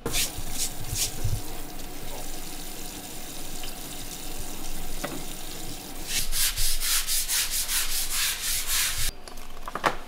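Stiff plastic scrub brush scrubbing a wet plastic cutting board, steady scratching that turns into quick back-and-forth strokes, about four a second, near the end before stopping suddenly.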